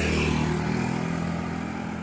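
Motorcycle engine running at a steady pitch.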